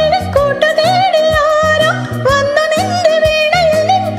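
A woman singing a smooth, ornamented Malayalam film-song melody over a backing track with a steady beat and a moving bass line.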